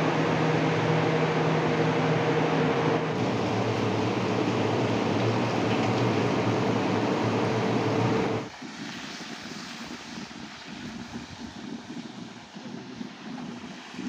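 A loud, steady roar with a low hum for about eight seconds, then an abrupt drop to a quieter, uneven sound of a cauldron of meat and onion broth bubbling at the boil.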